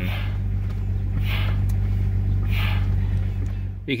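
Jeep Grand Cherokee ZJ engine idling, heard from inside the cabin as a steady low hum. Two soft hisses, about a second and a half and two and a half seconds in, come as the brake pedal is pumped to firm up a soft pedal after the new brakes went on.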